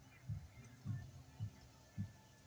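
Deep, evenly spaced thumps, just under two a second, on a quiet outdoor background.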